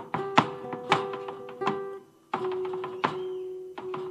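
Malambo zapateo: a dancer's boots striking the stage in rapid clusters of heel and toe stamps over strummed guitar chords. Strikes and chords break off for a moment about halfway, then start again.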